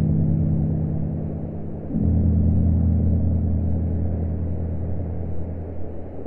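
Slow ambient music of low, sustained droning chords, the chord shifting to a new one about two seconds in.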